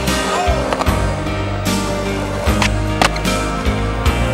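Skateboard wheels rolling on concrete, with a few sharp clacks of the board hitting the ground, under a rock song.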